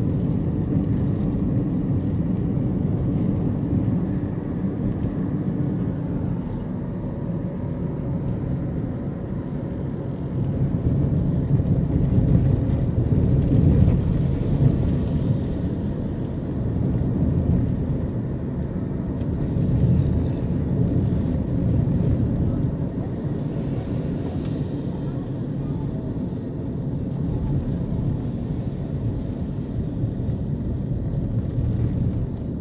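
Road and engine noise inside a car moving at highway speed: a steady low rumble that swells louder for a few seconds around the middle.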